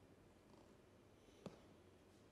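Near silence: faint room tone, with one soft knock about one and a half seconds in.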